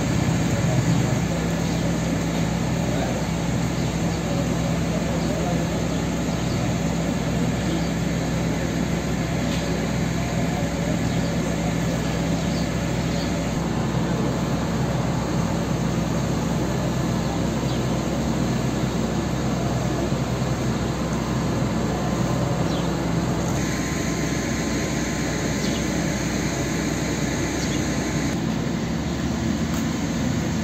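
A steady engine drone with a low hum, running at an even speed, with its sound shifting slightly twice near the end.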